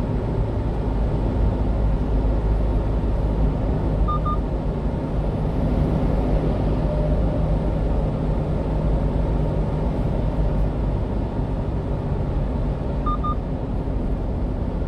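Steady road and engine noise of a 1-ton refrigerated box truck driving at speed. Two short double electronic beeps sound, about four seconds in and again near the end.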